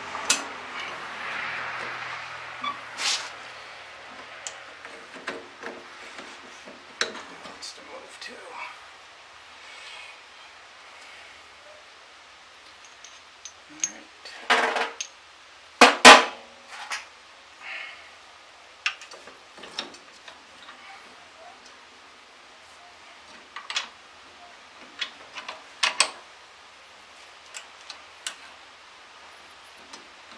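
Steel-on-steel clinks and knocks of tractor implement linkage being worked by hand as the hitch pin is taken out of the runner's joint, with the loudest few clanks about halfway through.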